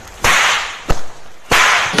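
A string mop swung hard through the air and slapped onto a man's head: two sharp, whip-like swishes about 1.3 s apart, with a short click between them.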